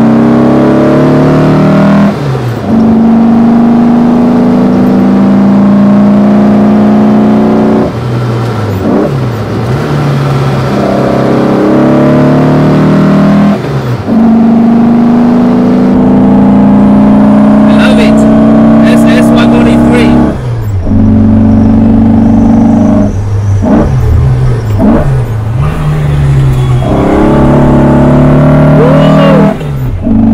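Modified VW Beetle's air-cooled flat-four with twin Weber 40 IDF carburettors, through an SS143 exhaust, pulling hard through the gears: the revs climb and then drop at each change, about every six seconds. In the second half, a run of quick throttle blips as the driver heel-and-toes down from fourth to third, then it pulls up through the revs again.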